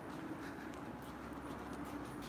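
Faint footsteps of a person walking up across a gym floor, over a low steady hum of the room.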